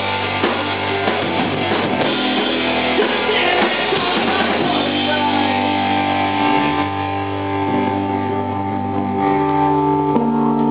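Punk rock band playing live: electric guitars, bass and drums. About halfway through, the busy playing gives way to long held, ringing notes, with a low note sliding down in pitch.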